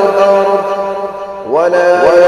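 A man's voice reciting the Quran in a melodic chanted style, holding a long drawn-out note that fades away, then starting a new phrase with a rising pitch about one and a half seconds in.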